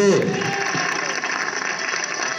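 Studio audience applauding, a steady patter of many hands clapping, heard through a television's speaker.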